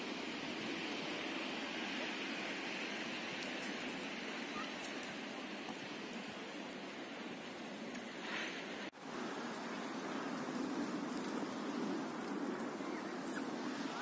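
Steady, even rushing noise with no clear events, cut off briefly about nine seconds in.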